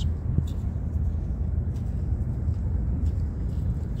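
Steady low outdoor rumble with a few faint clicks.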